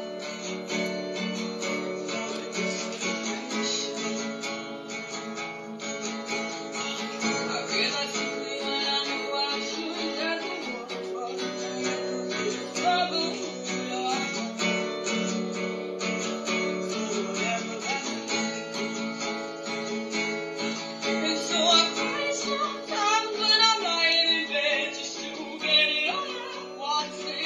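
Cutaway acoustic guitar with a capo strummed in a steady rhythm of repeating chords. A young woman's singing comes in over it near the end. It is heard thin and boxy, played back through a laptop's speakers.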